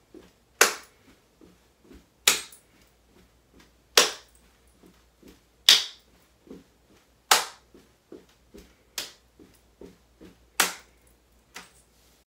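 Hand claps in a steady rhythm, one about every second and a half, seven sharp ones in all. Between them come soft low thumps of feet stepping on a carpeted floor, keeping a step-step-step-clap pattern. The last clap near the end is weaker.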